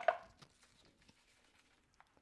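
A single short plastic knock as the food processor's lid and feed tube are handled, followed by faint clicks and handling noises.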